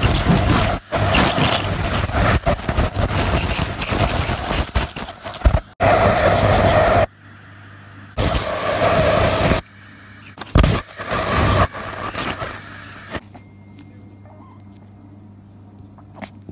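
Ultrasonic dental scaler with water spray scaling tartar off a cat's teeth: a high-pitched whine over a loud spraying hiss. It runs steadily at first, then in on-off stretches, and stops a few seconds before the end, leaving a low hum.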